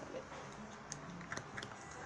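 Homemade glue-and-borax slime being squeezed and stretched by hand, giving a few faint, scattered clicks and pops as air pockets in the sticky slime burst.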